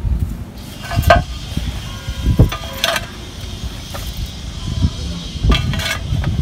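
A few short knocks and scrapes of terracotta roof tiles being set in place in a ring, over a steady low rumble.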